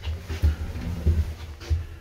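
Handling noise from a phone being moved about: irregular low thumps and rubbing on the microphone, several a second.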